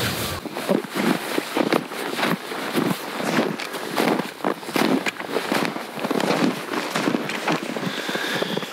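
Snowboard boots crunching through snow in a quick, steady run of footsteps, about two or three steps a second.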